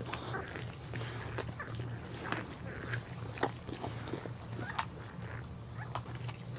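Boxer mother licking her newborn puppy: an irregular run of short, wet licking and smacking clicks.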